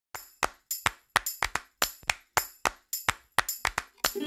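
Logo intro music opening with a rhythmic pattern of sharp, bright metallic clicks, about four a second.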